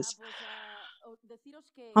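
A woman's soft, breathy hesitation sound, wavering in pitch, followed by a few short faint murmurs before she speaks again.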